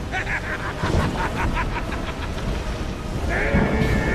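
A man laughing heartily in quick, rhythmic bursts, then a long held cry near the end, over the steady noise of driving rain and storm wind.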